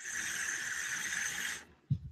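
A vape being drawn on: a steady airy hiss of air pulled through the dripping atomizer and over its firing coil for about a second and a half, then a short low puff of breath near the end as the vapour is exhaled.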